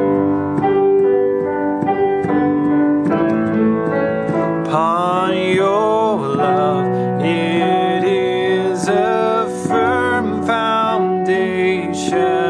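Stage keyboard played through MainStage with a piano sound, the right hand arpeggiating a three-note chord over a steady four-four pulse: a three-over-four pattern that gives a shifting pulse. From about five seconds in, a man's voice sings the melody along with it.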